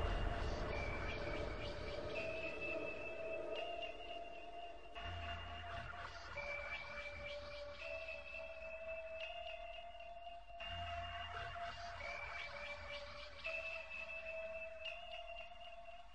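Electronic music fading out: a slow synthesizer melody of long held notes, a short phrase of about four notes repeating roughly every five and a half seconds, with a low bass note coming in at the start of a phrase twice. The whole piece grows steadily fainter toward the end.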